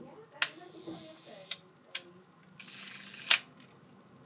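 Hasselblad 903SWC being worked by hand: three sharp mechanical clicks from its leaf shutter and controls, then a short rasping wind that ends in a loud snap.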